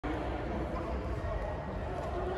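Indistinct chatter of voices over a steady low rumble of room noise in an echoing indoor sports hall, with no clear racket strikes.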